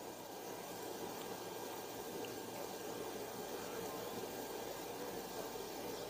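Faint steady hiss of room tone and recording noise, with no distinct sound events.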